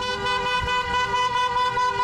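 Car horns held down in a protest honking (buzinaço): a loud, steady blare of several pitches together, over a low traffic rumble.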